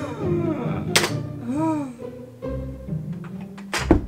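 Background music over a toddler playing with plastic toys: two sharp knocks, about a second in and near the end, and a couple of short gliding baby vocal sounds.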